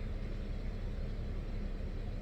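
A car's engine idling, heard as a steady low rumble and hum from inside the cabin.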